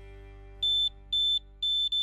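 The last held chord of background music fading out, then, from a little over half a second in, a run of loud, high electronic beeps, each about a quarter second long and about half a second apart: three in all, with a fourth starting at the very end.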